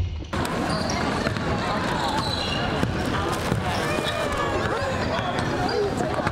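Gym ambience starting about a third of a second in: basketballs bouncing on a hardwood court amid many players' voices talking at once.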